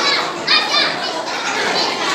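Crowd of young children chattering and calling out together, with one high child's voice rising above the babble about half a second in.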